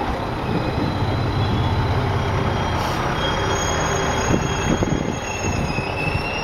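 Four-car KiHa 110 series diesel railcar train rolling slowly past at close range as it arrives and slows, with a steady rumble and low engine hum. Thin high squeals from the wheels join in about halfway, and a few knocks sound near the end.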